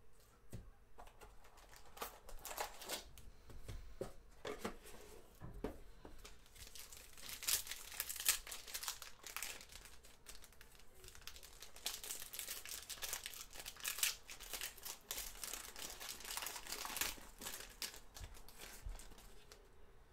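Foil trading-card pack being crinkled and torn open by hand: a long run of irregular crackles and rustles, busiest in the middle.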